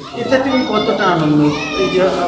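Children's voices chattering and calling out over one another, mixed with talk.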